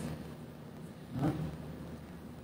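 A pause in a man's talk: quiet room tone with a faint steady low hum, broken once a little after a second in by a short hesitant "uh".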